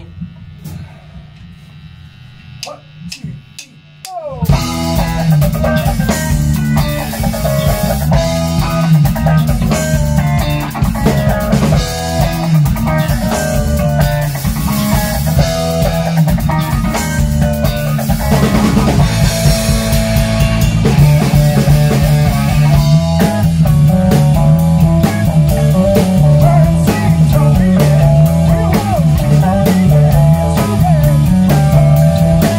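Rock band of drums, electric guitar and bass guitar in a small rehearsal room: a few sharp clicks, then about four seconds in the whole band comes in together and plays loud, steady rock.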